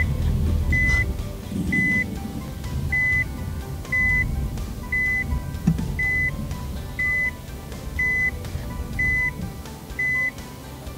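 Second-generation Nissan Leaf beeping steadily while ProPilot Park steers it into a parking space on its own. The same short beep repeats at an even pace, about once a second.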